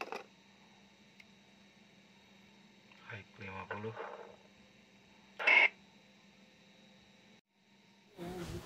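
Yaesu FT-1802 mobile transceiver under test on the bench after repair: a click as a button is pressed, a faint murmured voice around three seconds in while it is keyed to transmit, and a short sharp burst about five and a half seconds in, over a faint steady hum.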